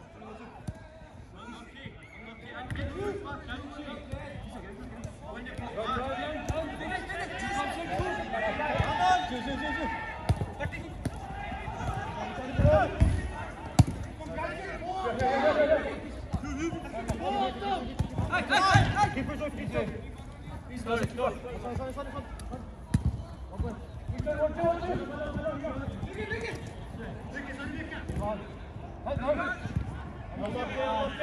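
Players calling out to each other during five-a-side football, with occasional sharp thuds of the ball being kicked. Two of the thuds, a little before and a little after the middle, are the loudest.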